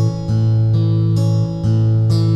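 Mahogany acoustic guitar fingerpicked in an A major root–fifth–third pattern. A new note is plucked about every half second and each one rings on over a low A bass.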